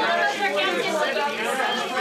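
Several voices talking over one another, none clear enough to make out: reporters in a press briefing room calling out questions all at once.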